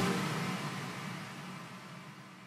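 The soundtrack's closing sound, a rushing noise with a low hum beneath it, fading out steadily.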